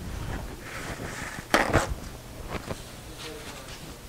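Handling noise at a work table: two sharp knocks close together about a second and a half in, then a few lighter taps.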